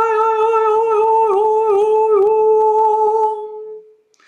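A woman's voice toning one long held note, steady in pitch apart from three brief dips in the middle, fading out shortly before the end.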